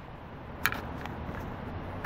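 Turn-signal flasher relay of a 1989 Honda CRX clicking faintly a couple of times over a steady low background hum. The signals are running on LED bulbs, which make them flash too fast (hyperflash).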